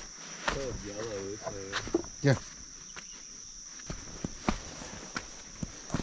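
Steady high-pitched drone of crickets with scattered footsteps of sandals on rock and dirt. A person's wordless voice, wavering in pitch like humming, comes in about half a second in and ends in a louder burst a little after two seconds.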